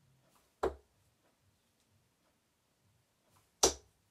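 Two 23-gram Gary Anderson Phase 4 steel-tip darts thudding into a bristle dartboard, about three seconds apart, the second a little louder.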